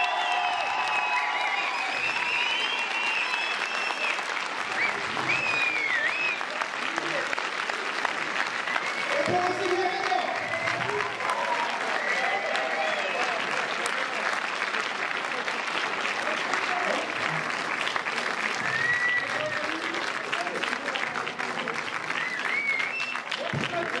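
A large cinema audience applauding steadily throughout, with voices calling out over the clapping now and then.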